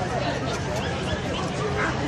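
A dog barking over the chatter of a crowd.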